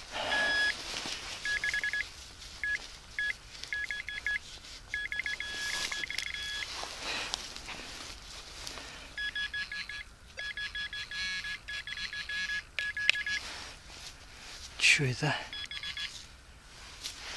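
Handheld metal-detecting pinpointer probe beeping in rapid runs of a high tone as it is worked through loose soil in the dig hole, closing in on a small buried metal target. The beeping stops for a couple of seconds in the middle, then comes back in faster runs.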